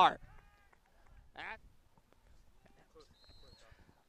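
Mostly quiet field ambience. A distant person gives one brief shout about a second and a half in, and a faint, steady high tone sounds for about half a second near the end.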